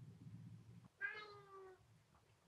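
A cat meowing in complaint at another cat: one call of under a second, falling slightly in pitch, about a second in, after a low rumbling sound.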